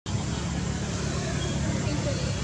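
Steady low outdoor rumble with an even hiss over it, starting suddenly.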